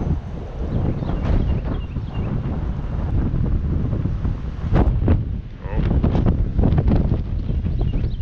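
Wind buffeting the microphone: a steady, gusty low rumble, with one sharp knock about five seconds in.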